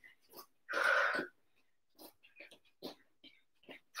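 A woman breathing hard after a high-intensity interval: one loud breath out about a second in, then a few short faint breaths.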